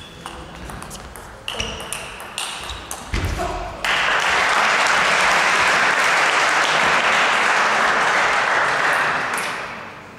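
A table tennis ball clicking sharply off rackets and table in a quick rally, which ends after about three and a half seconds. Just after it, spectators clap loudly for about five seconds, fading out near the end.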